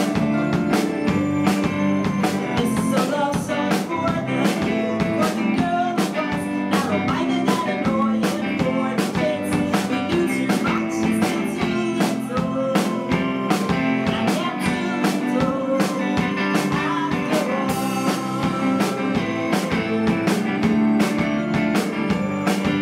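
Live indie band playing: a drum kit keeps a steady beat under guitar and keyboard.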